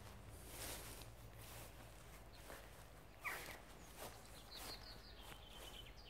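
Faint footsteps through long grass, with a few soft bird calls over quiet outdoor background noise.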